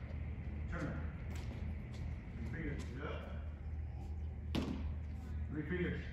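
A baseball smacks into a catcher's mitt once, sharply, about four and a half seconds in, with a few softer knocks earlier. A steady low hum and brief faint voices run underneath.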